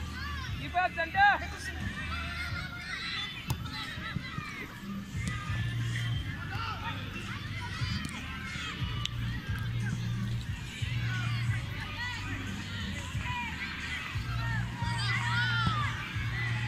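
Distant children shouting and calling out, in short high cries that rise and fall, with a low steady hum underneath.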